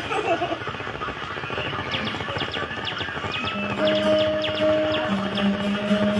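Acoustic guitar notes plucked and left ringing, a low note and a higher one held over background chatter, starting about halfway through, with a fresh pluck near the end.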